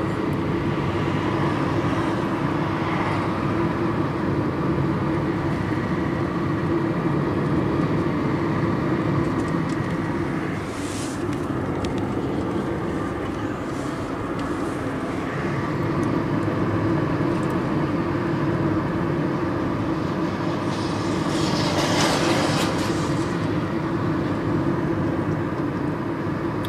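Steady engine and road noise heard from inside a moving car's cabin. Two short louder rushes of noise come through, one about halfway through and one near the end.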